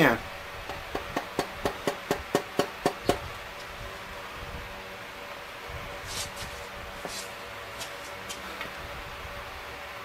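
Mallet tapping a piston down its cylinder bore in a Chevy 454 big-block, driving the connecting rod onto the crankshaft journal: a quick run of light taps, about five a second, that stops about three seconds in, leaving a low steady hum.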